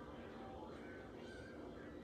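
Quiet room tone with a faint, short call about halfway through.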